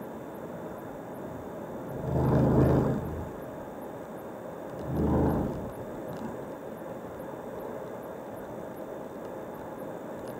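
Steady road and engine noise of a car driving at highway speed, heard from inside the cabin. Two louder rushing swells, each about a second long, rise and fall about two and five seconds in; the first is the louder.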